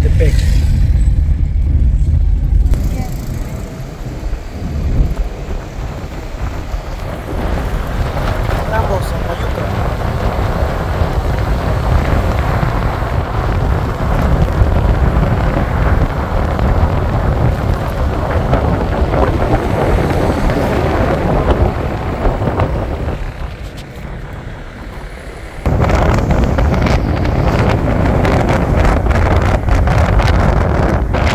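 Wind buffeting the microphone and road noise from a moving vehicle, a steady rumble throughout. It dies down for a couple of seconds near the end, then comes back loud.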